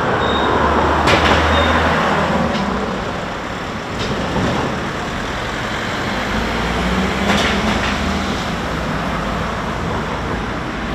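Road traffic driving past: engines and tyre noise of vehicles including a coach bus, a steady loud rumble with a couple of sharp knocks.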